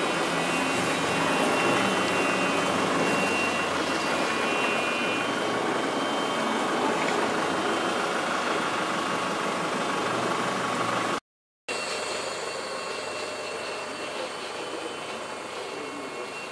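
Steady engine and road noise inside a bus. It cuts off abruptly about eleven seconds in and resumes a moment later as a quieter steady noise.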